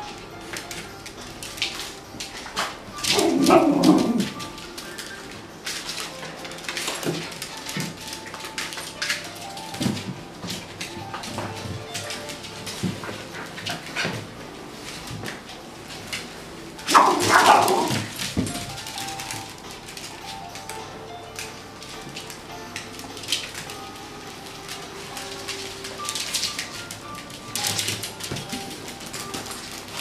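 Small dogs vocalising at play: two loud, drawn-out cries that fall in pitch, one near the start and one about halfway, with short yips and barks between, over faint background music.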